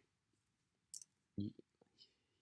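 A mostly quiet pause holding a single mouth click about a second in, followed by a brief low voice sound from the same man, not a word.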